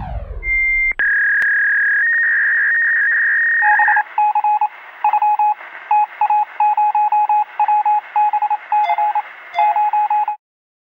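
Electronic telephone-line tones, thin and limited like sound over a phone line: a brief high beep, a steady high tone for about three seconds, then a rapid, irregular run of short lower beeps that stops just after the end.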